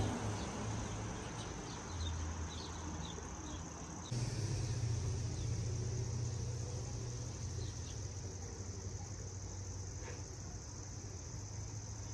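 Crickets chirping steadily as a high continuous background trill, over a low steady hum. A few short high chirps come in the first few seconds.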